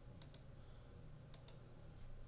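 Two double-clicks of a computer mouse button, about a second apart, over faint room tone.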